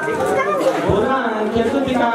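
Several people talking at once: voices of a crowd chattering, with a few short low thumps around the middle.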